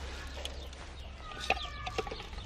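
Chicken clucking, with a drawn-out call in the second half. A sharp click sounds about halfway through, with a smaller one near the end.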